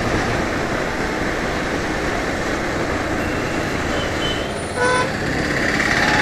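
Steady wind and road noise from a motorcycle being ridden at about 55 km/h. A short vehicle horn toot sounds about five seconds in.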